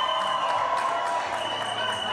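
Entrance music with long held notes and a steady beat of about three a second, under a crowd of guests cheering and clapping.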